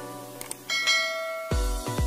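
Subscribe-animation sound effects: a couple of quick mouse clicks, then a notification-bell ding about two-thirds of a second in that rings and fades. Electronic dance music with a heavy bass beat comes in near the end.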